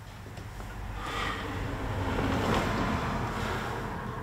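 A man breathing hard and straining as he pulls himself up on an overhead bar, over a low steady rumble.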